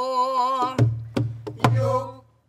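A voice holding a long, wavering pansori note that stops just under a second in, followed by three strokes on a pansori buk barrel drum, each a sharp crack with a deep thud. A quieter sung note carries on after the last stroke.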